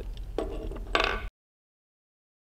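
Harken 75 mm Carbo ratchet block clicking rapidly as its sheave is spun, the spring-loaded pawl popping over the sheave's teeth. Two short runs of clicks, stopping abruptly a little over a second in.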